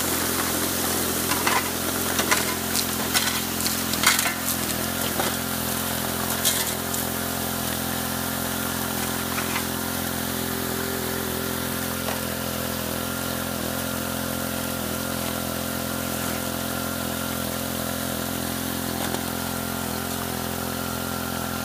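Small engine-driven water pump running steadily, with water from a highbanker's slit spray-bar jets hissing and splashing in the hopper. A few sharp clicks and knocks in the first several seconds.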